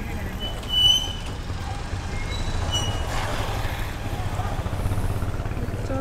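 Motorcycle engine idling steadily with a low rumble amid street traffic, with a short, high-pitched beep about a second in.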